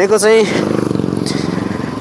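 Bajaj Pulsar NS200's single-cylinder engine running steadily as the bike cruises at low speed, heard from the rider's seat, after a few spoken words at the start.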